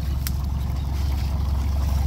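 A 1970s cruiser's Perkins diesel engine idling with a steady low hum. A single short click comes about a quarter of a second in.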